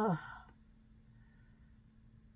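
A woman's soft "oh" of admiration, falling in pitch and trailing off into a breathy sigh within half a second. Then only quiet room tone with a faint steady hum.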